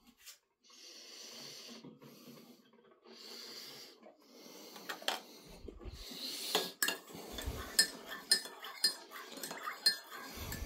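A metal teaspoon clinking repeatedly against a ceramic mug as coffee is stirred, in a quick run of clinks and knocks over the second half. Earlier come two soft hissing rushes of about a second each.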